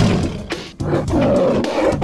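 Roar sound effect for an animated Tyrannosaurus rex: one roar dies away in the first half second, then a second long roar starts just under a second in.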